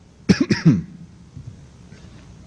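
Someone coughs three times in quick succession, about a quarter second in.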